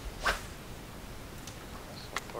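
A fishing rod swishing through the air once in an overhead cast, about a quarter second in, followed by faint quiet background.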